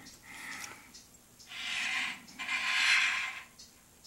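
A person breathing close to the microphone: a faint breath, then two longer, louder breaths of about a second each.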